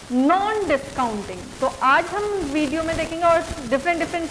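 A woman speaking in a lecturing voice, with a steady hiss underneath.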